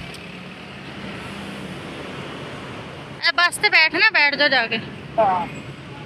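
Steady road and wind noise from riding in a moving vehicle, then a high-pitched voice speaking loudly for nearly two seconds about three seconds in, with a short bit of voice again about a second later.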